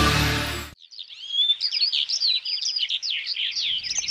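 Background music stops within the first second, then birds chirp in many quick, overlapping calls.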